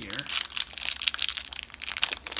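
Foil wrapper of a 2017 Topps Series 2 baseball card pack crinkling as it is torn and peeled open by hand, a rapid, irregular run of crackles.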